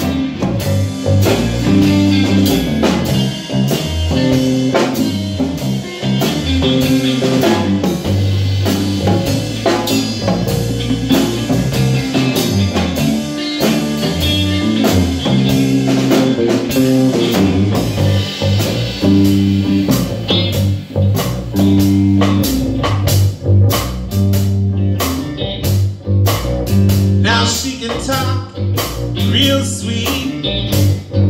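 A live band playing an instrumental stretch of a blues-rock song. Guitar plays over a drum kit keeping a steady beat, with a repeating low bass line underneath.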